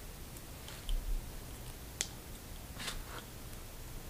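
Faint handling sounds of rubber bands being stretched and wound around popsicle sticks on a small homemade catapult: a low bump about a second in, a sharp click about two seconds in, and a short rustle near three seconds.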